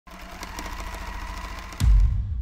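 Sewing-machine sound effect, a fast mechanical rattle stitching on, then a sudden loud deep boom just before the end as an audio logo hit.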